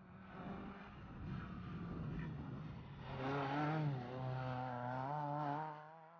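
Fiat Seicento rally car's engine revving as it is driven hard through a tight stage section, its pitch rising and falling with throttle and gear changes; loudest about three to four seconds in.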